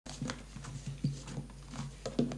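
Low, indistinct voices murmuring in a small room, mixed with a few light clicks.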